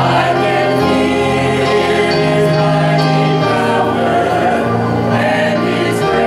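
A small praise team of mixed voices singing a gospel hymn together, holding long notes.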